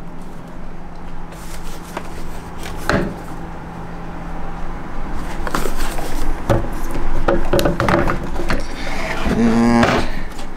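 Electric skateboard parts being handled on a table: hard plastic and board knocks and rattles as the removed battery enclosure and deck are moved about, with two sharp knocks a few seconds in and busier clatter in the second half.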